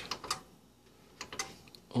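A few light, sharp clicks in two small clusters, one just after the start and one a little past the middle, with near quiet between them.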